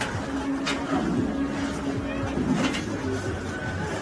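Men's voices talking in the background among the rehearsal crew, over a steady low hum.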